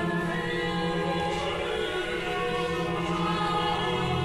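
Choir singing long held chords over a steady low drone.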